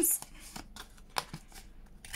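Paper rustling and a few light clicks as a card pocket is handled and fitted into a plastic corner-rounder punch, with the sharpest click about a second in.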